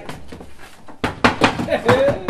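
A quick run of sharp wooden knocks, about five strikes starting about a second in, as the wooden picket gate of a stage set is struck and worked at.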